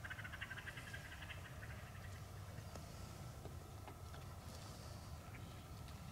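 An animal's rapid chattering call, lasting about a second and a half at the start. A brief faint rustle follows near the end.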